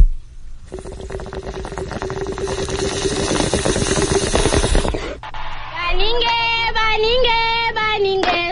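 Radio sound effect of a bong hit: a sharp click, then water bubbling through a bong, building louder for about four seconds, followed by chanted 'tribal' singing that starts about six seconds in.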